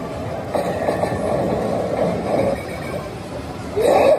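Kabaneri pachislot machine playing its sound effects during a reel-spin sequence, over the steady din of a pachinko parlour, with a swooping effect sound near the end.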